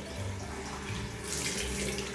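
Water running steadily from a bathroom sink tap into a small plastic bottle and the basin below.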